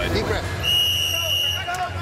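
A high, steady electronic tone held for about a second, which stops sharply: the sound effect of a TV broadcast's replay-graphic transition, heard over voices and crowd noise.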